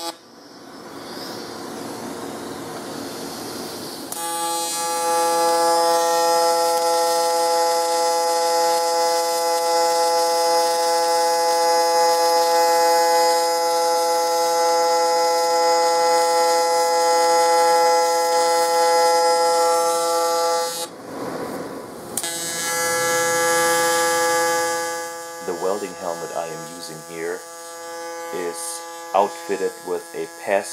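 Aluminum arc welding: after a hiss, the arc settles into a loud, steady buzz at one fixed pitch about four seconds in. It breaks off briefly around twenty-one seconds, strikes again, and near the end turns wavering and uneven.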